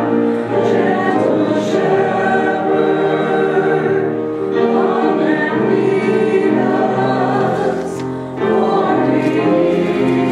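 Congregation singing a slow hymn together in unison, with a brief dip between phrases about eight seconds in.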